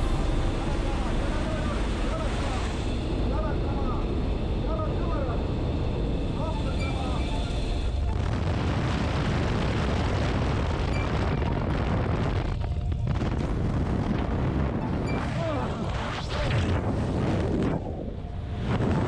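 Jump-plane engine droning steadily inside the cabin, with faint voices over it. About eight seconds in, a rough rush of wind takes over as the door opens and the tandem pair goes out into freefall, wind buffeting the microphone.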